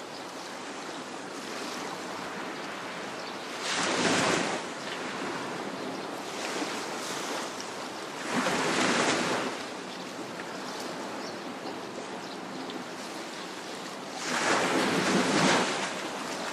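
Surf on a shore: a steady wash of water with waves breaking and surging louder three times, about every five seconds.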